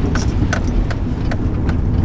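Car cabin noise while driving: a steady low rumble of engine and tyres, with a few faint scattered clicks.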